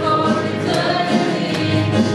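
Youth choir of mixed voices singing a worship song in unison, with accompaniment keeping a steady beat about twice a second.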